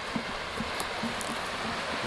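Steady rushing of river rapids, white water running over rocks.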